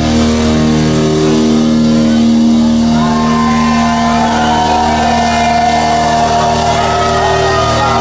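Live hard rock band holding a sustained, ringing chord, with a voice singing over it from about three seconds in.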